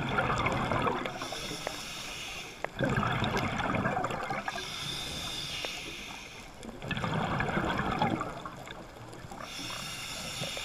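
Scuba diver breathing through a regulator underwater: a hissing inhale alternating with a rumbling burst of exhaled bubbles, about every four seconds, three bubble bursts in all.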